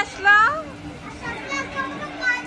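Children's high-pitched voices calling out while playing, with two loud calls in the first half second, then quieter child chatter.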